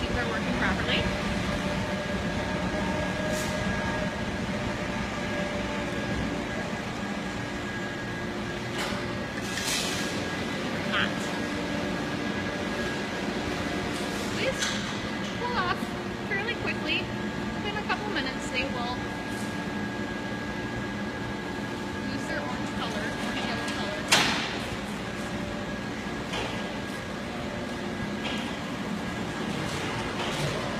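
Steady hum of iron-foundry machinery with several held tones. It is broken by occasional metal clanks and one sharp knock about 24 seconds in.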